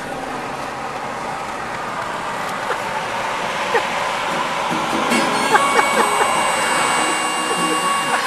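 Steady road and wind noise from a moving car. About five seconds in, music comes in with held tones, leading into harmonica and guitar.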